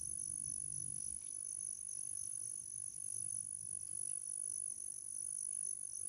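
Insects calling outdoors in a steady, high-pitched drone that does not break, over a low rumble.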